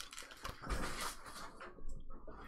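Handling noise from things being moved about on a tabletop: faint rustles and light knocks, with a soft low thud a little past a third of the way in.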